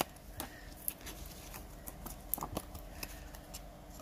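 Faint rustling and a scattering of small sharp clicks from thin card stock being handled and pressed as 3D foam adhesive pads are worked on the back of a die-cut card panel.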